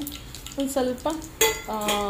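A woman's voice speaking in short phrases over a pan of heating oil, with a sharp clink of metal on the pan about halfway through.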